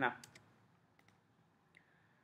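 Computer keyboard keystrokes: a few quick clicks in the first half-second, then faint single clicks at about one second and near the end.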